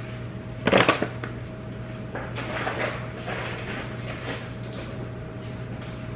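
A kitchen cupboard door knocks shut about a second in, followed by faint handling sounds over a steady low hum.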